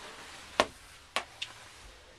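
Two sharp knocks about half a second apart, a fainter third just after, over quiet room tone.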